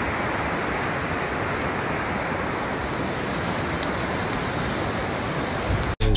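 Steady, even rushing noise with no distinct events, cut off suddenly near the end.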